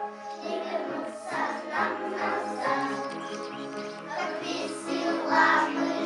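A group of young children singing a song together over recorded musical accompaniment.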